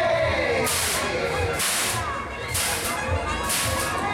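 Loud fairground sound at a spinning thrill ride: a thudding bass beat with a sharp hiss repeating about once a second, starting a little under a second in.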